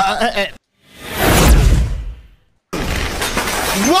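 A single crash-like noise that swells up and fades away over about a second and a half, heavy in the low end.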